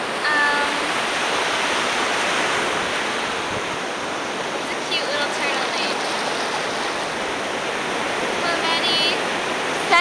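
Surf washing up a sandy beach: a steady rush of waves with no pause. Short bits of a girl's voice come through a few times.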